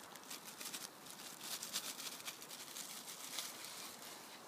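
Quiet, irregular crackling and popping from a cooking pot boiling over a wood fire, steady throughout with no single loud event.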